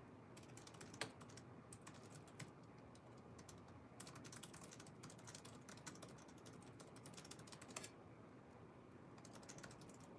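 Faint typing on a computer keyboard: quick runs of key clicks with short pauses, and a louder key strike about a second in and again near the end.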